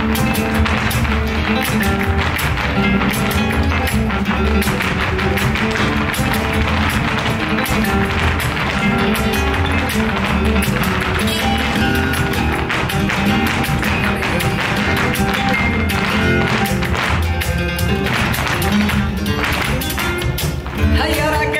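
Flamenco music with a steady beat, with sharp taps from the dancers' shoes on the stage throughout.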